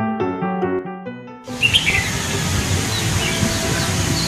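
Background music that cuts off suddenly about a second and a half in. It gives way to open-air noise, a steady hiss with a few short bird chirps in it.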